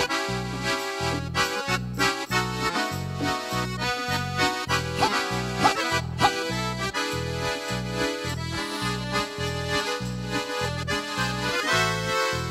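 Red button accordion (bayan) playing a lively dance-pop intro, with a steady pumping bass beat of about two to three notes a second under the melody. Hand drums and a cymbal are struck along with it.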